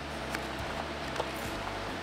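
Small cardboard box being opened by hand, with a couple of faint taps and rustles from the flaps over a steady low hum.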